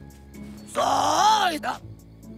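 A cartoon yeti's long, frightened groan, its pitch rising and then falling, starting under a second in and breaking off before the end, over soft background music.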